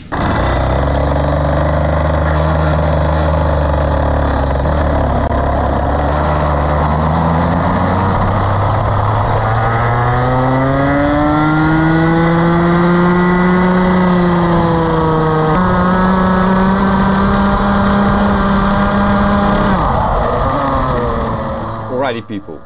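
Rotax Max 125 single-cylinder two-stroke kart engine heard onboard, pulling up from low revs with its pitch climbing, easing off and rising again as it drives on. Its pitch jumps suddenly about two-thirds of the way through.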